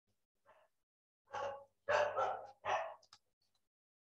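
A dog barking in the background: three short barks in quick succession, starting more than a second in.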